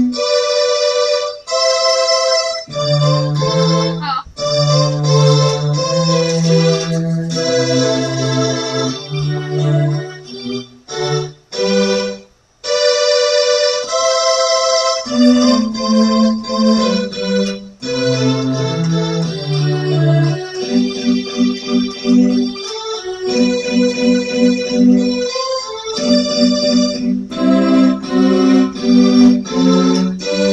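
Portable electronic keyboard played as a four-hand duet: held chords and melody notes over a stepping bass line, each note sustained evenly. The playing breaks off briefly near the middle, then resumes.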